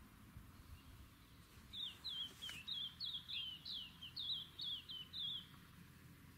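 A songbird singing a quick run of about a dozen short down-slurred notes, about three a second, starting a couple of seconds in and stopping shortly before the end, over faint steady outdoor background noise.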